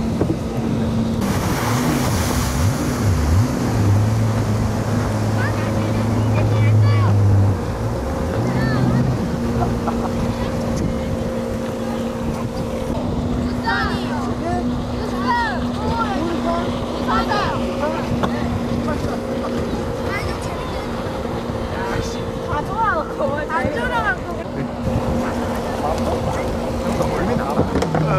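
Steady engine drone of a motorized water craft, with wind and spray noise. High-pitched voices call out now and then, mostly in the second half.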